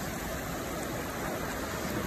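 Shallow, clear mountain river running over cobbles and small rapids: a steady rushing of water.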